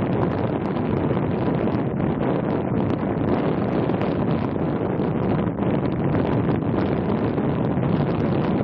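Wind buffeting the microphone: a steady, rough rush of noise that never lets up.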